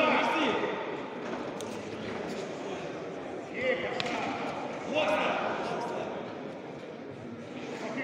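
Voices calling out in bursts, echoing in a large sports hall, with a few sharp knocks of blows landing between two fighters.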